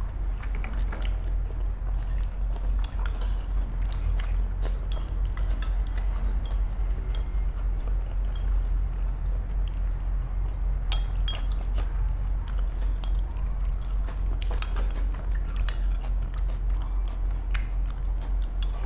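Close-up eating sounds: chewing and biting of shredded chicken salad and rice, with a spoon and chopsticks clicking against ceramic bowls many times, over a steady low hum.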